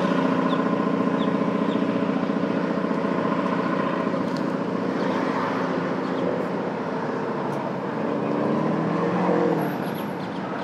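2000 Chevrolet Corvette's 5.7-litre LS1 V8 running hard as the car is driven through an autocross course, growing fainter as it moves away, then rising in pitch as it accelerates about eight seconds in.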